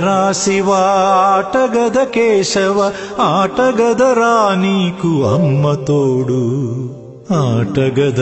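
A devotional song to Shiva: one voice sings long, heavily ornamented phrases that waver up and down in pitch. It breaks off briefly about seven seconds in and starts a new phrase.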